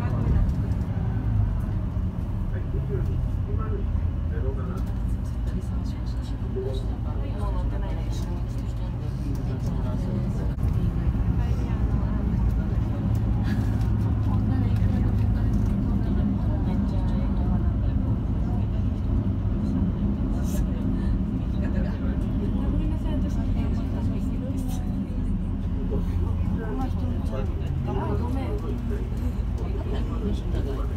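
Airport apron bus engine running, heard from inside the passenger cabin as the bus drives across the apron: a steady low drone whose pitch shifts a few times as it speeds up and slows. Voices murmur faintly under it.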